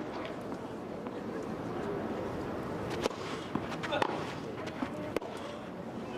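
Tennis ball struck by racquets on a grass court: a second serve and a short rally, heard as a few sharp, widely spaced hits in the second half, over a steady murmur from the stadium crowd.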